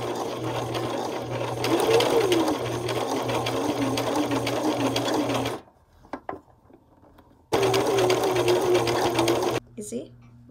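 Brother LX3817 sewing machine stitching a hem with a twin needle: the motor and needle run fast and steady for about five and a half seconds, stop with a few small clicks, then run again for about two seconds before stopping near the end.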